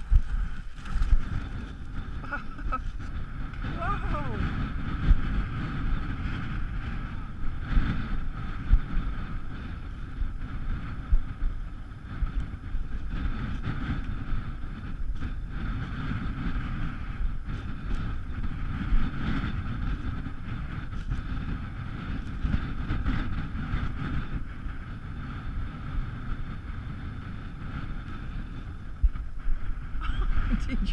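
Strong wind buffeting the microphone: a continuous low rumble with repeated sharp gusts.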